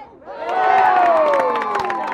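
Spectators cheering and yelling for a goal just scored in a soccer match. The cheer rises sharply about half a second in and stays loud, many voices overlapping.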